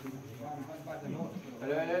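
Several men's voices talking over one another, with one voice calling out louder near the end.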